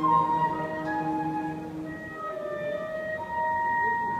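Live classical music from a small string ensemble with piano, playing slow, long-held notes that grow louder near the end.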